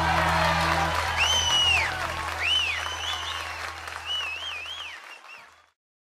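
The song's final chord rings out under applause and cheering, with several shrill whistles rising and falling in pitch. Everything fades to silence shortly before the end.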